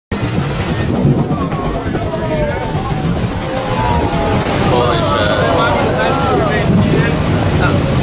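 A tour boat's engine runs steadily under wind buffeting the microphone and waves on the water. Several passengers' voices call out and exclaim over one another, most busily in the second half.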